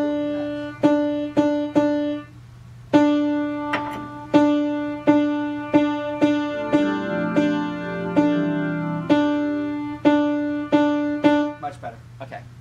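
Grand piano with a single mid-range key struck over and over, about once every half to one second, each note ringing and dying away, as when a note is being tuned. Partway through, a few lower notes sound together with it for a couple of seconds.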